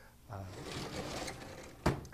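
A sliding blackboard panel being pushed up in its frame: a scraping rumble for about a second and a half, ending in a sharp knock as the board stops.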